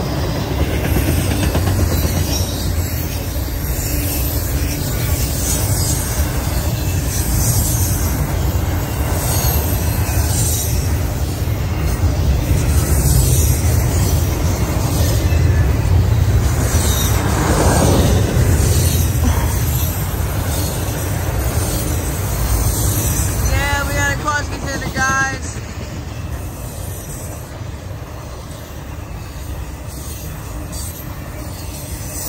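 Double-stack intermodal freight train's loaded well cars rolling past. A steady low rumble with a light clatter of wheels repeating every second or two, easing somewhat in the last few seconds.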